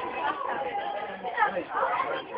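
Indistinct chatter of several people talking at once, no words standing out.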